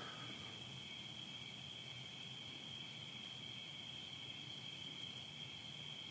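Faint, steady high-pitched trill of crickets over low background hiss.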